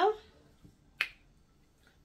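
A single sharp finger snap about a second in, following the end of a spoken phrase.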